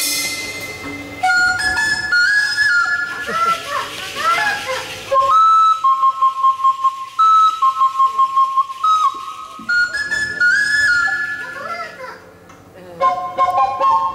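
Twin flutes played together as an unaccompanied solo: a bending, sliding melody with a run of quick repeated notes in the middle. The band comes in near the end.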